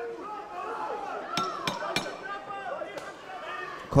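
Three sharp knocks about a third of a second apart, the ten-second warning clapper signalling the end of the round is near, over the background voices of the crowd in the hall.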